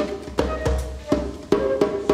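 Djembe struck by hand in a steady run of strokes, with a flute holding long, even notes over it.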